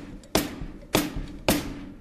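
Hi-hat cymbals played with the foot pedal alone: three sharp, accented splashes a little over half a second apart, each with a thud from the pedal and a short ringing tail. The foot lifts off the footboard between strokes, the way the lesson says not to play it.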